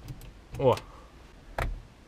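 A short spoken "o", then a single sharp click with a dull low thump under it about one and a half seconds in, from hands working the controls inside a car cabin.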